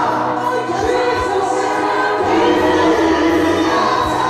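Congregation singing an isiZulu gospel song together in chorus, many voices at once with a steady, full sound.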